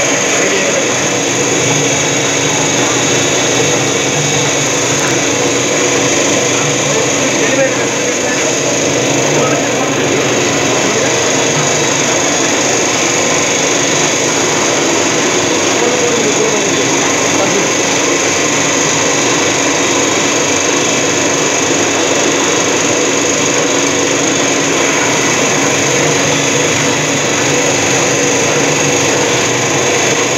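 Puffed rice (muri) making machine running steadily: a loud, constant mechanical rushing noise with a faint whine in it, while puffed rice pours from its outlet.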